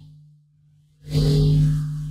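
Logo intro music sting: a low sustained drone, with a rising, whooshing swell about a second in that slowly fades.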